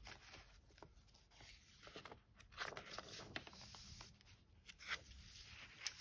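Faint rustling and a few soft crackles and taps of paper pages and tucked cards being handled and turned in a handmade junk journal.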